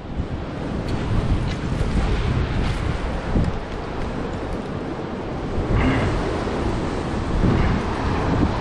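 Wind buffeting the microphone over the steady wash of ocean surf breaking on the rocks below.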